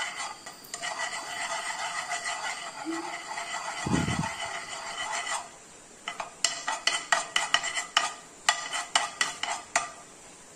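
A metal spoon stirring sugar as it melts for praline in a nonstick frying pan. There is a steady scraping for about five seconds, with a dull bump near the middle. Then come quick clinking strokes against the pan, about four a second.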